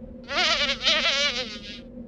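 A mosquito buzzing close by, a wavering high whine in two passes.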